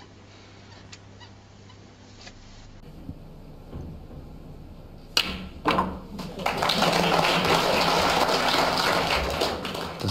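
Snooker balls clicking: the cue strikes the cue ball and the cue ball hits an object ball, two sharp clicks about half a second apart. Then the audience applauds loudly and steadily.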